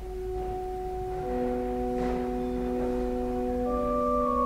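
Organ playing held, pure-sounding notes. Two notes sound at first, two lower and middle notes join about a second in, and higher notes change near the end, building a sustained chord.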